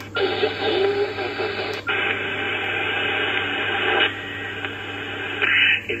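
Receiver hiss and static from a Kenwood TS-590 HF transceiver's speaker, tuned to an empty frequency in sideband mode as the operator changes band. The hiss comes on suddenly and changes in tone a few times as the radio settles on the new band.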